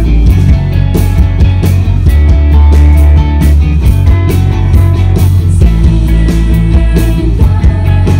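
Live rock band playing loud through the PA: several electric guitars over drums, with cymbal and drum hits throughout, heard from the audience.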